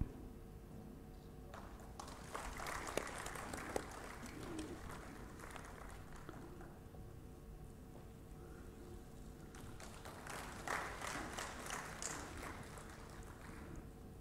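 Faint, scattered audience applause in two short spells, the first a couple of seconds in and the second about ten seconds in, over a low steady hum.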